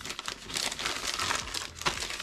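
Clear plastic bag crinkling and rustling as a silicone mat is pulled out of it by hand, with one sharp click near the end.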